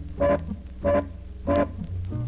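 Live jazz quartet of accordion, guitar, flute and double bass playing: three short, loud chords about two-thirds of a second apart over a steady bass line.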